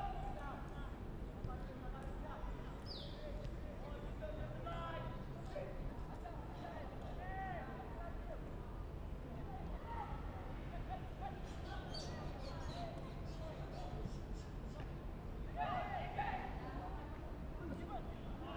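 Faint, distant voices calling and shouting out on an open football pitch, in short scattered bursts over steady low background noise, a little louder near the end.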